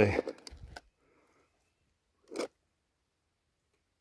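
Mostly near silence, broken by a few faint clicks in the first second and one short soft rustle about two and a half seconds in.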